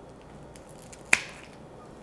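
A single sharp snip about a second in: hand nippers closing through a philodendron stolon.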